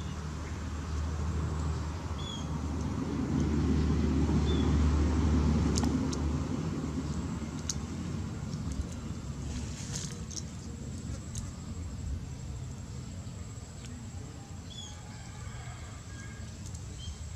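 A motor vehicle's low rumble swells over the first five seconds or so and then fades away, as it passes. A few short high chirps and some small clicks sound over it.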